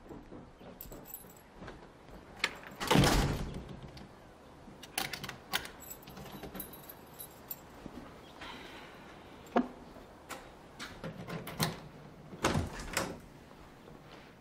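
A wooden apartment door swings shut with a loud thud about three seconds in. Several sharp clicks of keys and the lock follow, and another door is pushed open near the end.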